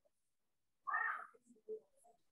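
A cat meowing once, briefly, about a second in, followed by a couple of fainter short sounds.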